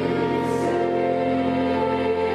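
A boys' choir singing slow, sustained chords, the held notes moving to new pitches about half a second in and again near the end.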